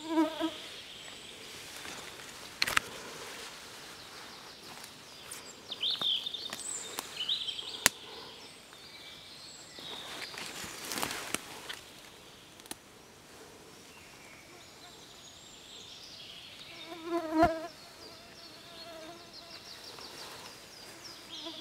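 A fly buzzing close past the microphone, loud for a moment right at the start and again about three-quarters of the way through, with faint insect buzzing and a few high chirps in between.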